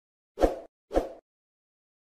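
Two short cartoon 'pop' sound effects about half a second apart, from the animated subscribe-button overlay popping onto the screen.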